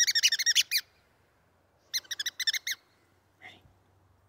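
A squeaky rubber toy ball squeezed over and over, giving two quick runs of high squeaks at about eight a second: the first stops just before a second in, the second comes about two seconds in.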